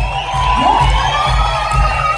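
Live band playing with a steady thumping beat while the audience cheers and whoops over it.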